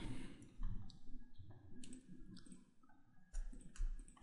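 A few faint, spaced-out computer mouse clicks.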